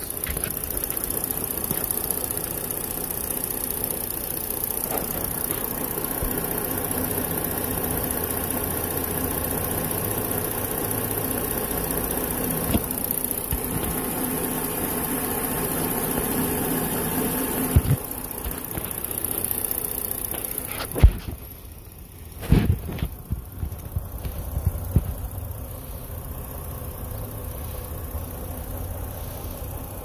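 A 2019 Ford Flex's V6 engine idling steadily, judged a good motor. A few sharp knocks come about two-thirds of the way in, after which the idle sounds quieter.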